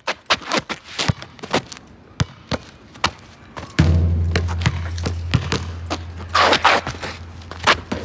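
Field recording of a basketball court: a ball bouncing and players' steps as a run of irregular thuds. From about four seconds in, a steady low hum runs under the bounces.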